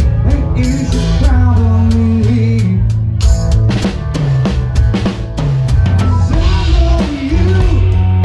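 Live band playing, with a full drum kit up front: kick drum, snare and cymbals driving a steady beat over a moving bass line and sustained pitched notes.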